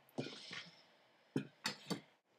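Quiet handling sounds of a kitchen knife and chopped tomato: a soft scrape across a wooden cutting board, then three short sharp clicks and knocks in the second half as the pieces go into a glass bowl and the knife is set down.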